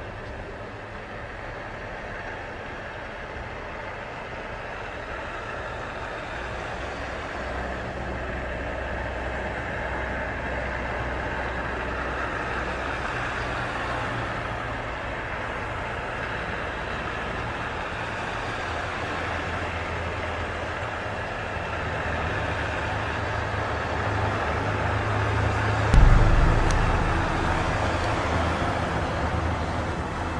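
A steady rushing, rumbling noise that slowly grows louder, broken by one sudden low thump about four seconds before the end.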